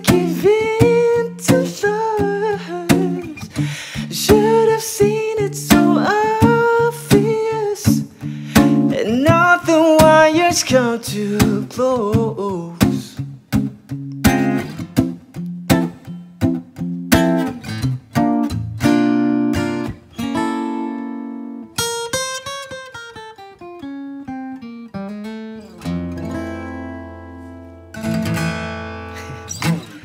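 Live acoustic guitar with a man singing a wordless, bending melody over it in the first half; then the guitar plays on alone, ending with a low chord left ringing near the end.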